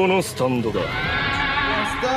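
A horse whinnying: one long, quavering call starting about half a second in, after a short vocal sound.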